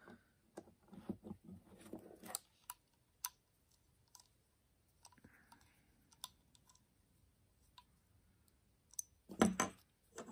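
Faint, irregular light clicks and ticks of a small bit driver turning the steel body screws into a Spyderco Paramilitary 2 folding knife's handle. Near the end comes a short cluster of louder sharp metal clicks as the knife is handled.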